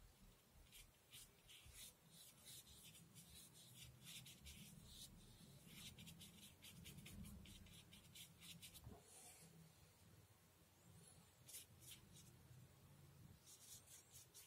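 Faint strokes of a thin paintbrush on paper: many short, light, scratchy dabs in quick succession, with a brief lull past the middle.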